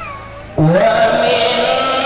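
A man's voice reciting the Quran in a melodic chant, amplified through a microphone. After a short pause a new phrase begins loudly about half a second in, the voice sliding up and then holding a long note.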